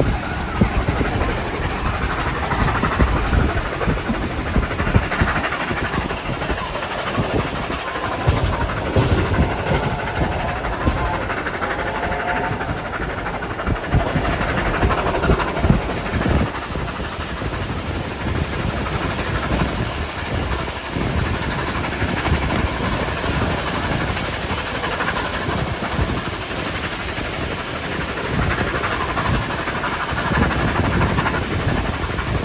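Carriage of a steam-hauled heritage train running along the line, heard from an open carriage window. The wheels clatter over the rails under a steady rush of track and wind noise, with irregular low surges throughout.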